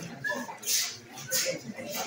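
Indistinct voices of people talking in a room, with two short hissy rustles a little under a second apart.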